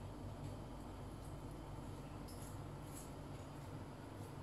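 Faint scraping of a kitchen knife sliding between skin and flesh as the skin is cut off a raw cod fillet, a few short soft strokes over a steady low room hum.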